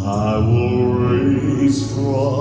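A man singing a worship song into a handheld microphone over a backing track of held chords. His voice comes in right at the start and sings a sustained, wavering line.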